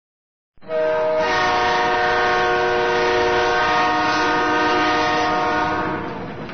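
Train horn sounding one long chord of several notes, starting about half a second in and held steady, with a noisy rumble underneath, beginning to fade near the end.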